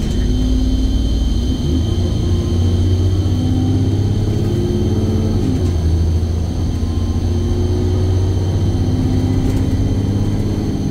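Rear-mounted diesel engine of an Alexander Dennis Enviro400 double-decker bus pulling hard at full throttle, heard from inside the lower deck. Its drone climbs in pitch, drops suddenly about five and a half seconds in as the automatic gearbox changes up, then climbs again.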